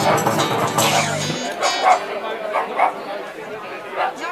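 A live band with guitars and a hand drum finishing a song: the last chord stops about a second and a half in, then short vocal calls and voices follow.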